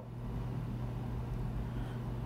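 A steady low hum of room noise, with no other sound standing out.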